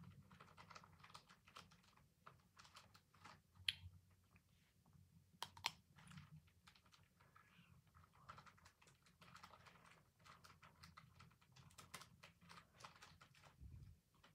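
Faint chewing and biting of a milk-chocolate Easter egg: a run of small clicks and crackles, with two sharper clicks about four and five and a half seconds in.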